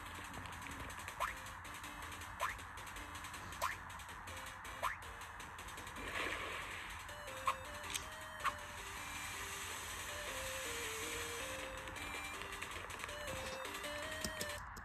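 Soft cartoon background music with a slow, stepped melody, played from a screen's speakers. Four short rising chirp sound effects come about a second apart in the first five seconds, and a brief swell and a few clicks follow midway.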